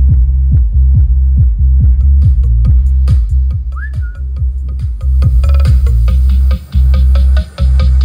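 Electronic dance music played loud through an Ashley RXP-215 passive 2×15-inch speaker with an Ashley Zoom 218 dual-18-inch subwoofer: heavy sustained bass under a kick drum beating about twice a second. About four seconds in a short rising whistle sounds, and near the end the bass cuts out for a moment twice.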